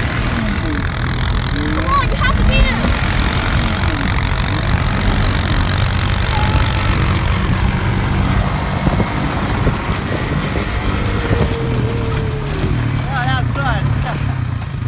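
Honda ATV engine running steadily under throttle, a continuous low drone as the quad churns through snow. A few short voice sounds, shouts or laughter, come about two seconds in and near the end.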